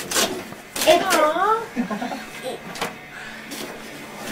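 A large gift box being handled: a few short knocks and rustles, with a brief wavering vocal sound about a second in.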